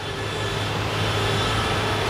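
A steady low hum with a rushing noise over it, slowly getting louder.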